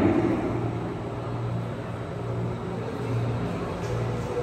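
Steady low hum over the diffuse room noise of a large hall.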